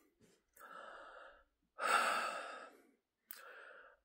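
A man breathing audibly in a pause in his speech: a faint breath about half a second in, a longer and louder sigh-like breath around two seconds in, and another faint breath with a small mouth click near the end.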